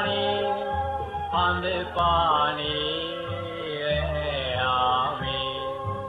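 Extract of a Sri Lankan song: a sung melody with gliding, bending pitch over sustained bass accompaniment notes.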